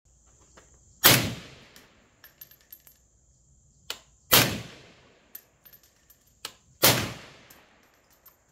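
A scoped, bipod-mounted rifle firing three single shots a few seconds apart, each loud crack trailing off in about a second. Fainter clicks and tinkles come between the shots.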